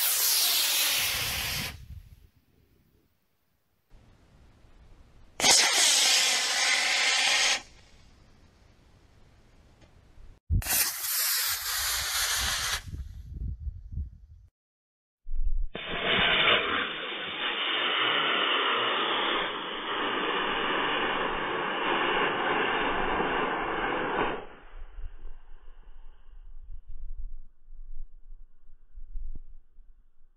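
Estes C6-3 black-powder model rocket motor firing with a rushing hiss, heard several times over: three bursts of about two seconds each, the first two falling in pitch as the rocket climbs away, the third opening with a sharp crack. A longer, duller rush of about nine seconds follows near the middle.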